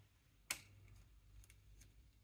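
A single short, sharp click about half a second in, then a few faint ticks, as a small metal bearing is pushed into the hole of a grey plastic part with a pressing tool.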